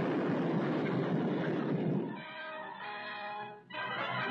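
The rumble of a large explosion continues for about two seconds, then music of held, sustained chords takes over.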